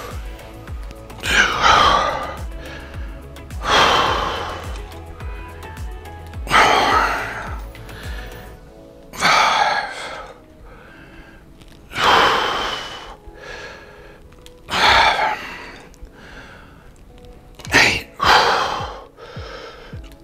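A man breathing out hard with each dumbbell curl, a sharp exhale about every two and a half seconds, eight in all, over steady background music.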